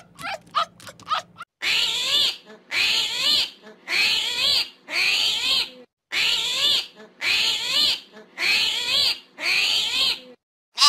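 A fox giving quick, high yips, about four a second, for the first second and a half. Then an armadillo's call, repeated evenly about once a second: eight squealing grunts, each rising and falling in pitch.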